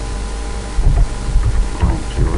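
Steady electrical hum and hiss on the microphone. From just under a second in comes a run of irregular low thumps.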